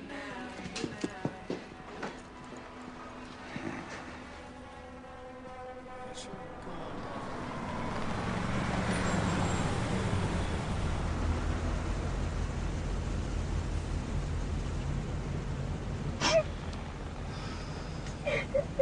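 Soft song fading out, then vehicle engine and road noise building up about seven seconds in and holding steady with a low rumble. A short sharp knock comes near the end.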